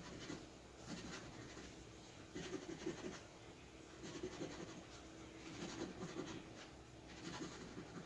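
Faint scraping of the coating being scratched off a scratch-off lottery ticket, in short repeated bouts with brief pauses between them.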